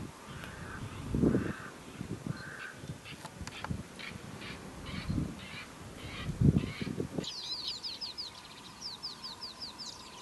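Wild birds calling outdoors: short calls repeat about twice a second, mixed with low gusts of wind on the microphone. About seven seconds in, the sound changes suddenly to a fast series of high, falling chirps of bird song.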